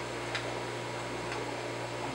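Steady low hum and hiss of background room tone, with two faint ticks.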